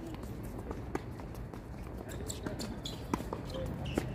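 Tennis ball being hit with rackets and bouncing on a hard court during a doubles rally, heard as a series of sharp, irregularly spaced pops, with faint voices in the background.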